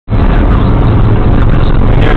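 Steady, loud road and wind noise with a low rumble, heard from inside a car cruising at about 90 mph on a motorway.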